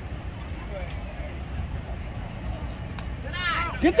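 Outdoor crowd sound at a youth baseball game: a steady low rumble with faint distant voices, then near the end spectators shout, one calling "Get there!".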